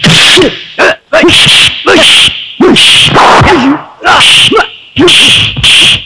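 Film fight sound effects for a stick fight: a loud swish and whack about once a second, each with a short grunted shout from the fighters.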